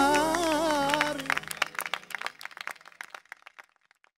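A Gulf Arabic song ends on a held, wavering note from a male singer with accompaniment about a second in, then scattered hand clapping that thins out and stops shortly before the end.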